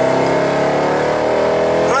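Mercedes sedan's engine accelerating hard under throttle, heard from inside the cabin: the note climbs steadily as the revs rise in one gear.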